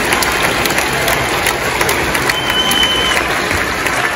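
A crowd clapping and cheering in a dense, continuous patter of hands and voices, with a short high whistle a little over two seconds in.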